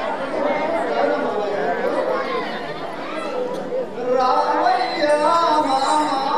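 Actors' voices delivering sung-spoken stage dialogue in Telugu folk theatre. About four seconds in, held sung notes with musical accompaniment come in.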